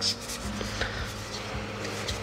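Soft rustle and a few light clicks of Magic: The Gathering trading cards being handled and fanned out in the hands, over faint steady background music.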